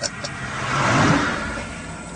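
A vehicle passing by, its noise swelling to a peak about a second in and then fading away.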